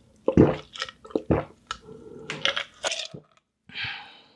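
Close-miked gulping and swallowing as a drink is taken from a glass jar, about six gulps in three seconds.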